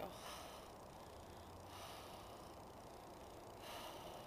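A person breathing out softly close to the microphone, three faint breaths about two seconds apart.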